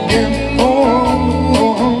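Live blues-rock band playing at full volume: electric guitars and bass guitar over a drum kit, between sung lines of the song.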